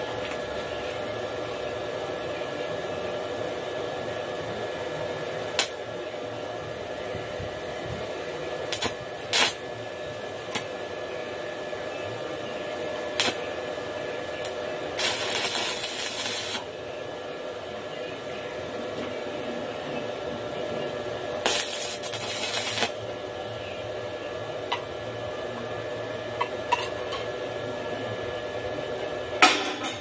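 Stick arc welding on a steel tube frame: two bursts of crackling arc, each about a second and a half long, with short sharp snaps of the electrode striking the metal before them and a run of sharp taps near the end, over a steady background noise.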